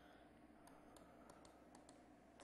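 Faint, quick, irregular clicks from computer use, about eight of them in the second half, over a low steady room hum.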